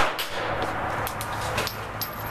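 A Ruger LCP .380 pistol shot, its loud report dying away quickly at the very start. A few much fainter sharp cracks follow, about a quarter second, a second and a second and a half in.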